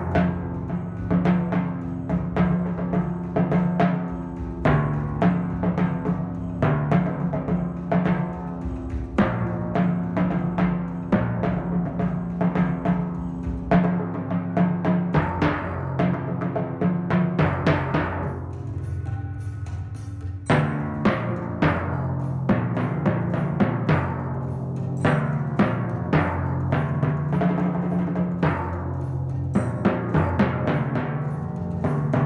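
Pedal timpani played with mallets in a continuous passage of quick strokes that move between drums of different pitch, each stroke ringing on under the next. About two-thirds of the way through the strokes thin out and soften briefly before picking up again.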